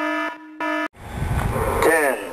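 Stock electronic alarm buzzer sounding in short harsh repeated blasts, two in quick succession, then cutting off about a second in. A low rumbling noise follows, with a falling tone near the end.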